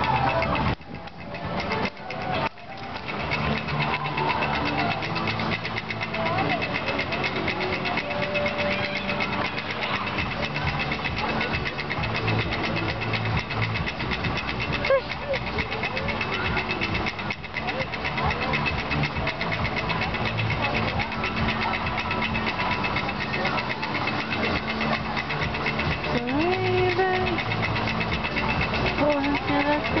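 Roller coaster chain lift running steadily as a train is hauled up the lift hill, with a fast, continuous clatter. Voices are faint in the background.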